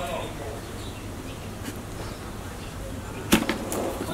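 A knife cutting through an Adenium (desert rose) branch while pruning: a sharp snap about three seconds in, then a second smaller click just after, the branch severed in a single stroke.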